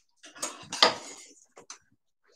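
Hard objects being handled, clattering and clinking in a quick run of knocks about half a second in, then a couple of short clicks.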